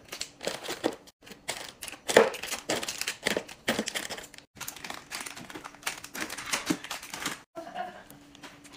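Plastic-wrapped chocolate bars crinkling and tapping in quick, irregular handling as they are stacked one after another into a refrigerator door shelf.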